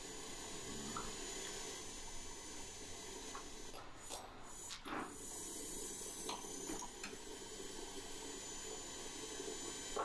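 Steady workshop hiss with a few faint, light metal clicks as the steel tongs and a centre punch are handled on a steel bench, and a slightly sharper tap at the very end.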